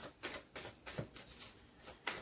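Faint, irregular clicks and rustles of a deck of oracle cards being shuffled by hand.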